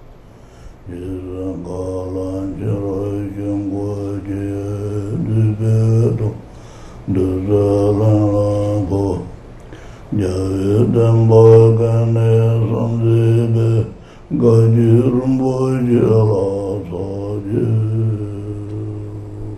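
Group of voices chanting a Tibetan Buddhist Kagyu lineage supplication in unison, a slow melodic recitation over a steady low hum, in four phrases with short breaks between.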